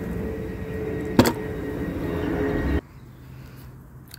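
Steady low outdoor background rumble with a faint steady hum and one sharp knock about a second in. It cuts off abruptly near the end to a much quieter background.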